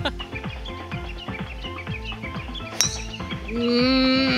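Background music with a steady beat. About three seconds in comes one sharp crack of a driver striking a golf ball off the tee, and just before the end a long held note begins.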